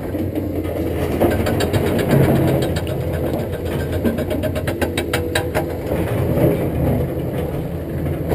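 Caterpillar 320D hydraulic excavator's diesel engine running steadily while it works its boom and bucket, with a fast run of clicks from about two to six seconds in.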